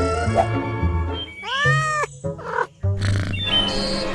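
Light children's music with one meow-like cartoon animal call, rising then falling in pitch, about one and a half seconds in.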